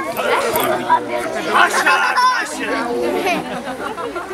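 Several people talking at once, indistinct chatter with no clear words.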